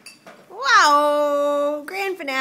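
A baby's long wailing cry, starting about half a second in with a quick rise and fall in pitch and then held on one loud note for about a second; it breaks off near the end and a second cry begins.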